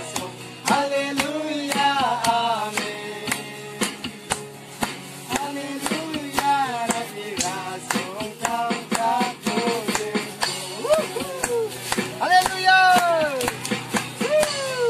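A group of voices, children and men among them, singing a song together to a strummed acoustic guitar, the strums giving a steady beat.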